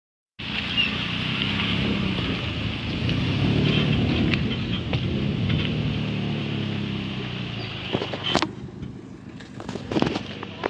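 A motor vehicle engine running close by, a steady low rumble that fades away about eight seconds in, followed by a few sharp clicks.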